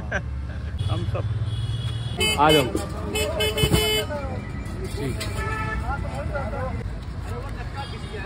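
Street traffic rumbling, with a vehicle horn sounding for a second or two around the middle, over voices nearby.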